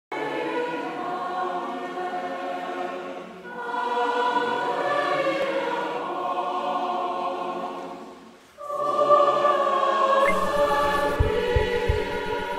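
Choir singing in long held chords, in three phrases with short breaks about three and a half and eight and a half seconds in. Near the end a low rumble and a few soft knocks come in underneath.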